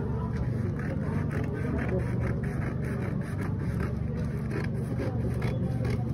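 Scissors snipping through layered brown pattern paper in quick, uneven cuts, over a steady low hum.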